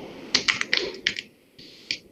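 Computer keyboard typing: a quick run of key clicks, then a single click near the end.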